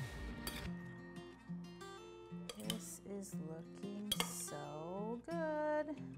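Metal tongs clinking against a glass bowl as cauliflower is tossed in sauce, a few sharp clinks scattered through, over background music.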